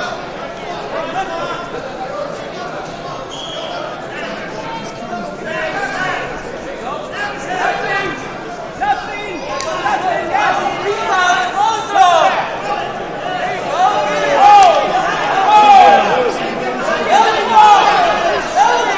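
Several voices shouting at once in a large, echoing hall as spectators and coaches call out during a youth wrestling bout. The shouts rise and fall in pitch and grow louder in the second half.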